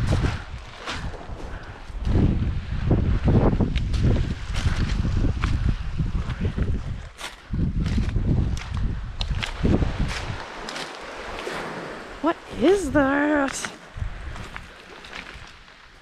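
Wind buffeting the microphone in uneven gusts, dying down after about ten seconds, with footsteps crunching and clacking on beach pebbles. A short hummed voice comes in near the end.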